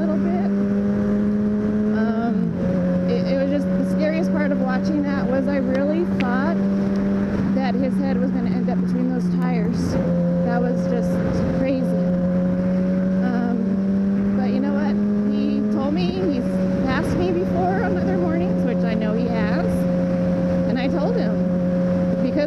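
Sport motorcycle engine running steadily at freeway cruising speed, a loud, even drone. Its pitch shifts slightly three times as the throttle changes.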